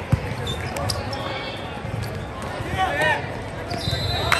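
Volleyball rally in a large echoing gym: a ball is struck with a sharp thud just after the start, then a player's call about three seconds in.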